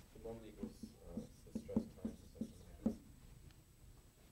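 Quiet, mumbled speech over the scratch of someone writing, dying away about three seconds in.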